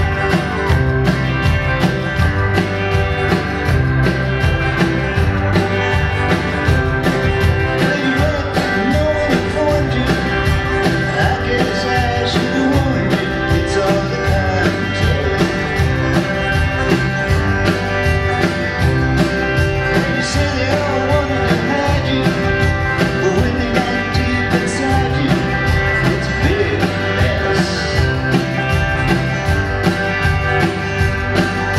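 Rock band playing live, with electric guitars, a violin-shaped electric bass and a drum kit keeping a steady beat.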